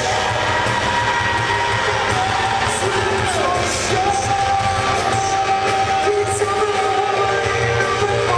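Post-hardcore rock band playing live: electric guitars, drums and sung vocals, with a long held note around the middle, heard from the audience.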